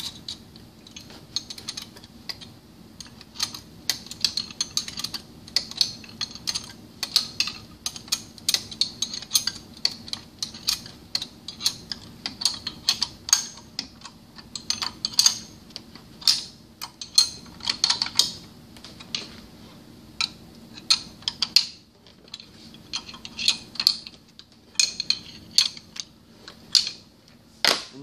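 Irregular metal-on-metal clicks and clinks from a wrench working bolts on a centrifugal pump's mechanical seal assembly, about two or three a second with short pauses, while the bolts are tightened to torque.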